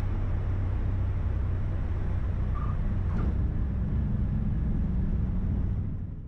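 Single-engine piston airplane's engine and propeller running steadily, a low drone heard inside the cockpit, fading out near the end.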